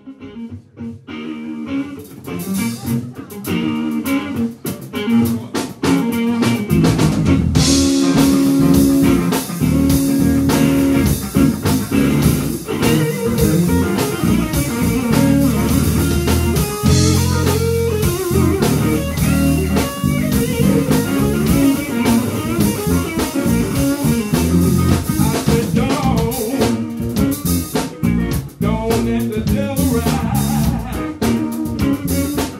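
Live blues band playing: electric guitars over electric bass and drum kit. The music rises from quiet over the first few seconds, and the bass and drums come in fully about seven seconds in.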